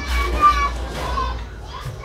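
Faint voices in the background, a child's among them, over a steady low hum.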